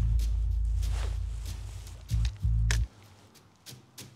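Background music: a deep bass note that slowly fades, then two short bass hits about two seconds in, over light percussion.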